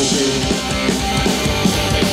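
A live rock band plays loudly without vocals: electric guitars, bass guitar and drum kit.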